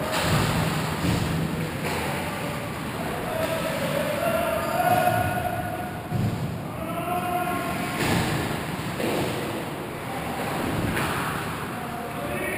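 Ice hockey game noise in an echoing rink: skates scraping, and sticks and puck knocking on the ice and boards. Players call out in the distance about four to seven seconds in.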